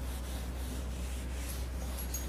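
Eraser rubbing back and forth across a whiteboard, wiping off marker writing, as a steady scrubbing noise over a constant low electrical hum.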